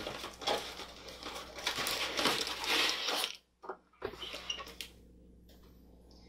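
Rustling and crinkling of a cardboard toy box and its plastic wrapping being handled and opened, busiest in the first three seconds. After a brief dropout come a few softer rustles, then the room goes quiet.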